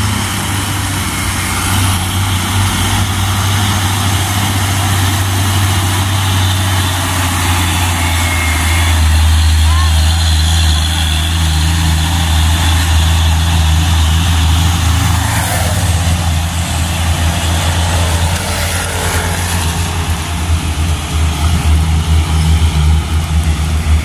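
Mitsubishi Fuso FN527 HD dump truck's diesel engine running with a deep, steady drone as the truck approaches and drives past, loudest as it passes about halfway through, over a steady hiss.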